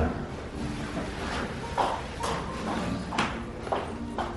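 A few scattered sharp clicks and knocks in a tiled room, over faint background voices.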